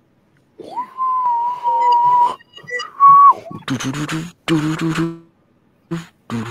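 A whistle-like pure tone glides up about a second in and holds one wavering note for about a second and a half. It breaks off, a shorter, slightly higher note follows, and then it drops away. Two buzzy, low-pitched passages follow near the end.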